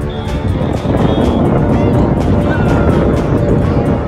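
Wind buffeting the microphone: a loud, dense low rumble that swells about half a second in and holds, over music playing in the background.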